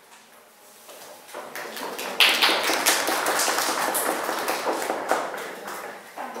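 Audience applauding: many overlapping hand claps that start about a second in and thin out near the end.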